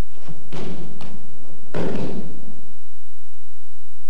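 Two judoka rolling on a judo mat: two dull thuds of bodies landing, with the rustle of heavy cotton judogi, a shorter one about half a second in and a louder, longer one around two seconds in.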